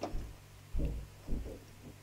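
Low, dull handling bumps from a boxy car stereo head unit being shifted in the hands, a couple of them about a second in, over a faint steady hum.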